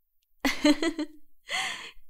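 A woman laughing: a few short breathy laugh pulses about half a second in, then a sharp in-breath near the end.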